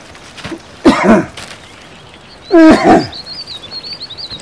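Two loud, short calls from an animal, about a second and a half apart, the second the louder; a small bird sings a high warbling song from a little past halfway.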